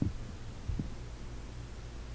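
Steady low hum of the recording's background, with two faint soft thumps, one at the start and one just under a second in.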